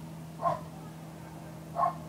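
Two short barks from a dog, one about half a second in and one near the end, over a steady low hum.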